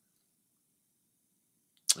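Near silence in a pause between spoken sentences, ended near the end by a short sharp click as a man's voice starts again.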